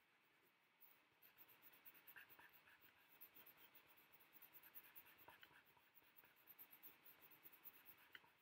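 Coloured pencil shading on paper: faint, quick back-and-forth scratching strokes that start about a second in and keep going.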